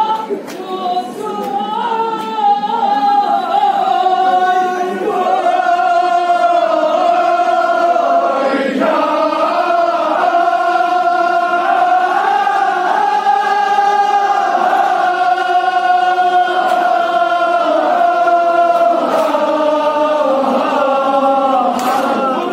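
A large group of men chanting together in unison, holding long notes that slowly rise and fall: a devotional lament sung by a mourning congregation.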